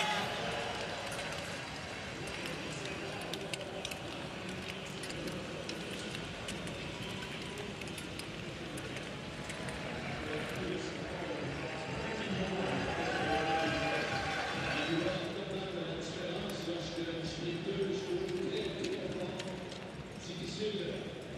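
Speed skating arena crowd cheering, many voices together, as skaters cross the finish line. Scattered sharp clicks sound through the din.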